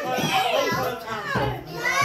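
Several young children's voices calling out and shouting while playing.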